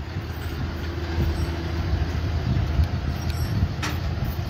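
Vehicle engine running steadily, a low rumble, with a short click near the end.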